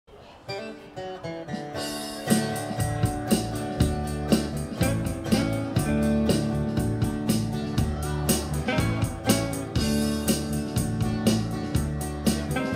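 Live band playing an instrumental song intro: guitar notes start it, then drums and bass come in about two seconds in and the acoustic and electric guitars carry on over a steady beat.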